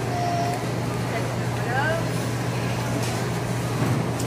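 Supermarket background sound: a steady low hum under a general noise bed, with a few short faint voice sounds from people close by.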